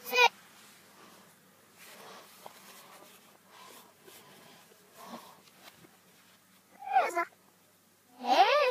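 Faint rustling of paper sheets being handled, then near the end a short high-pitched vocal squeal that rises and falls in pitch, with the audio played backwards.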